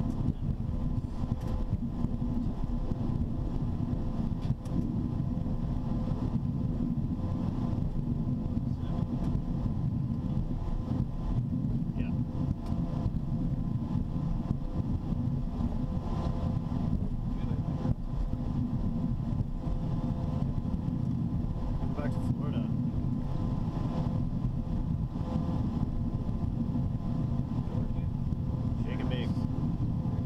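Cockpit noise of a Cessna Citation Sovereign twin-turbofan business jet rolling out on the runway just after touchdown: a steady low rumble with a faint steady hum over it.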